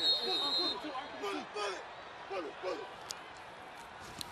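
Men's voices shouting short calls on a football field, growing fainter and dying away over about three seconds. A thin high tone rings briefly at the start.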